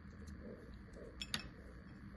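Quiet handling sounds as birthday candles are pulled out of a frosted cupcake on a plate: a few faint light ticks, with one sharper click a little past the middle.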